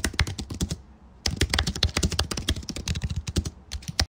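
Computer keyboard typing in quick runs of keystrokes, with a short pause about a second in before the typing resumes; it cuts off suddenly at the end.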